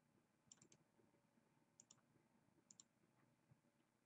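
Near silence broken by faint, quick clicks at a computer, in pairs and threes about a second apart, as names are copied and pasted.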